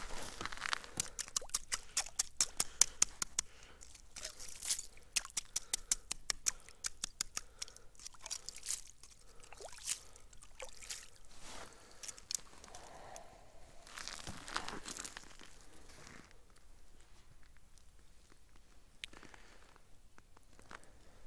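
Ice scoop crunching and scraping through slush and ice chips in a fishing hole, with quick runs of sharp clicks through the first several seconds; quieter from about sixteen seconds on.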